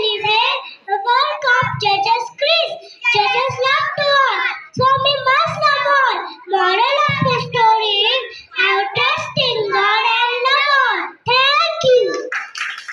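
Young children singing a song together, a girl's voice leading into a handheld microphone, in short continuous phrases.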